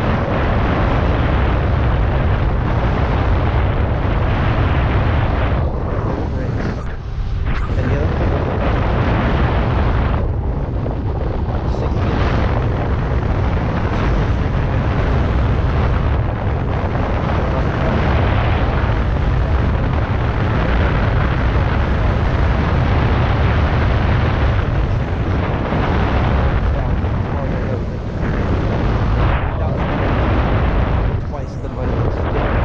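Wind buffeting the microphone of a camera riding on a moving electric unicycle: a loud, steady low rumble of rushing air that eases briefly a few times.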